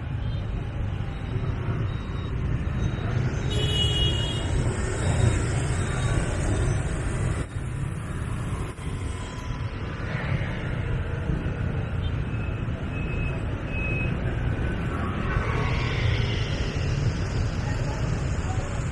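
Dense motorbike and scooter traffic heard from a moving motorbike: a steady low rumble of small engines, tyres and wind. A few short high beeps sound here and there, about four seconds in and again past the middle.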